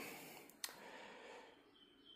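Near silence in a pause between a man's sentences, with one faint click just over half a second in.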